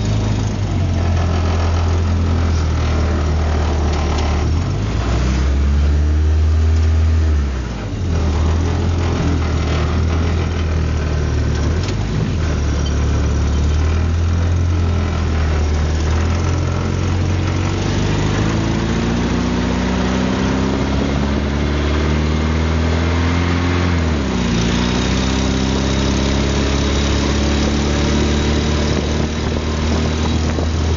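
Suzuki Samurai's four-cylinder engine pulling the vehicle along a snowy road, over a heavy low rumble. In the second half the revs climb slowly for several seconds, drop sharply as it shifts gear, then climb again.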